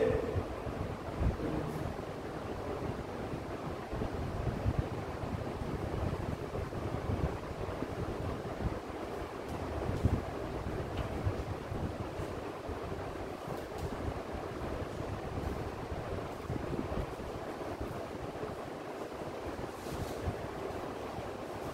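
Steady rushing noise with uneven low gusts, like moving air buffeting the microphone.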